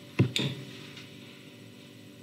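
The last short burst of a man's laugh, falling in pitch, right at the start, then a faint steady electrical hum.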